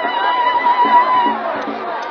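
A high, wavering ululation is held over a crowd of voices singing and shouting, and breaks off about a second and a half in.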